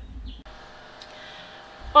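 Faint steady background hum with a few faint steady tones, after a brief low rumble at the start; speech begins right at the end.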